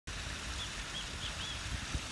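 Outdoor ambience: wind rumbling on the microphone, with four faint short chirps from a bird about a third of the way in. A soft bump from handling the phone comes just before the end.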